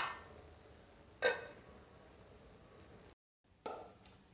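Three light knocks, each with a brief ring: one at the start, one about a second in, and one near the end after a short dead-silent gap.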